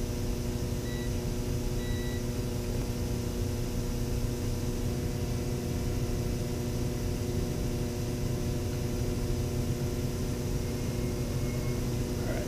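Digital multimeter's continuity beeper giving two short beeps about a second apart, the sign that the probed wire is connected to the terminal being tested. A steady electrical hum runs underneath.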